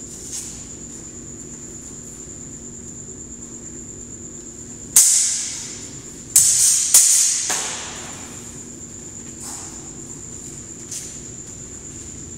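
Steel training swords, a longsword against an arming sword, clashing three times in quick succession near the middle, each contact ringing brightly and fading over about a second. A few lighter blade taps come before and after, over a steady faint hum.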